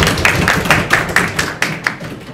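A small group of people clapping their hands, the claps thinning out near the end.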